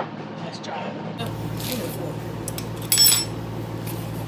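A short, bright metallic clink with a brief ring, about three seconds in, over low voices and room noise.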